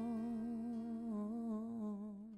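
Background music: a single held, hum-like note with a slow vibrato, dying away near the end.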